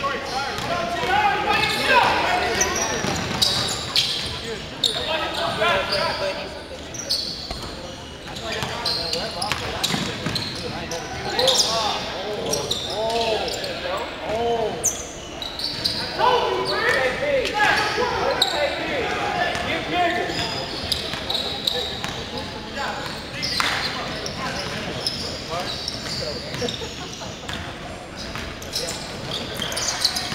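Sounds of a live basketball game in a large gym: the ball bouncing on the hardwood floor and sharp knocks of play, with players' voices calling out, echoing in the hall.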